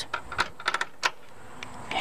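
Light metallic clicks from the manual shift lever on a Ford 4R70W automatic transmission being moved through its detents, a quick run of clicks in the first second.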